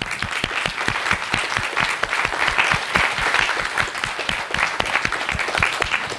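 Audience applause: many people clapping steadily together.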